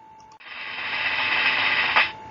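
A noisy rush that swells over about a second and a half and cuts off suddenly as the slide changes: a presentation slide-transition sound effect.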